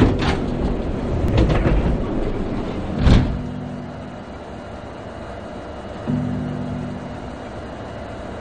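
KTX high-speed train's passenger door and folding step opening: a series of mechanical clunks and clicks, the loudest about three seconds in, then quieter station ambience with a low held tone near the end.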